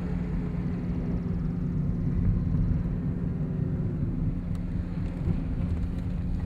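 Road and engine noise inside a moving Suzuki car's cabin: a steady drone with a constant low hum.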